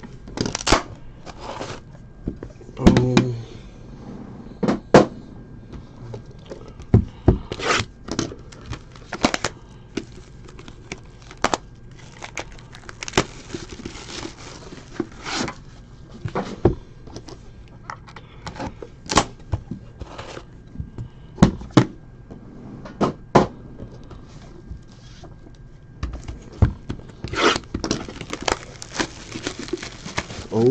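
Cardboard trading-card hobby boxes handled on a table: irregular knocks, taps and clicks as the boxes and their lids are opened, moved and set down, with a stretch of rubbing and sliding near the end.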